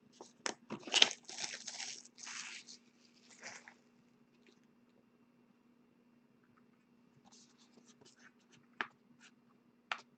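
Plastic wrapping crinkling and tearing for about three seconds as a trading-card box is opened, loudest about a second in. A few light clicks and taps follow near the end.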